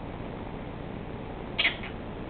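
A Quaker parrot (monk parakeet) gives a short, sharp squawk about one and a half seconds in, over a steady background hiss.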